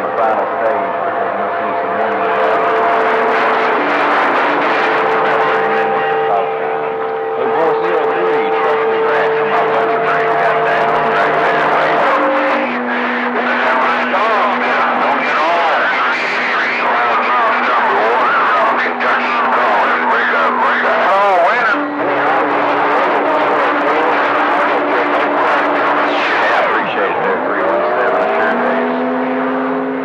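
CB radio receiver on channel 28 picking up distant skip stations: garbled, unintelligible voices talking over one another under static, with steady whistling tones from overlapping carriers that change pitch every few seconds. Near the end one whistle slides in pitch and settles.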